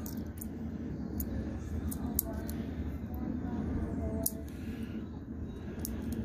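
Faint, scattered small clicks of the gold pins and plastic housing of an RJ-45 jack being worked by hand as the pins are bent outward, over a steady low hum.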